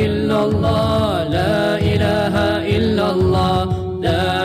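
Nasheed (Islamic devotional song): a singing voice holding and bending long, wordless notes over a low, steady backing.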